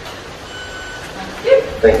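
A faint, steady electronic beep lasting about half a second, then a man starts saying "thank you" near the end.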